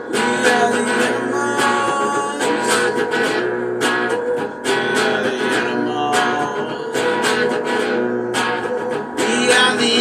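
Guitar strummed in a steady rhythm of chords, played live in the room.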